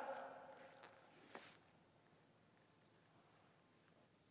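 Near silence: the echo of a shouted parade command fades away over about a second and a half, with one faint click partway through.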